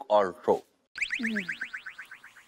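Comic sound effect: a fast train of short chirps, each sliding down in pitch, falling and fading as it goes.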